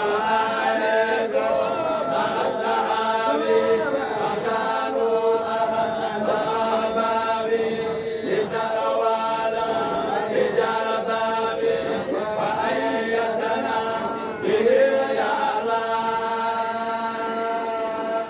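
A group of men's voices chanting a Qadiriya Sufi dhikr together, in long sustained phrases with brief breaks between them.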